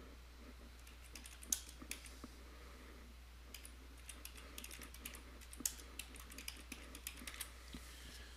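Computer keyboard typing: a short run of keystrokes, a pause of about a second, then a longer run of keystrokes, all faint. A steady low hum lies underneath.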